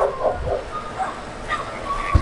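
A dog whining in a thin, high, drawn-out tone, with a couple of short yelps near the start.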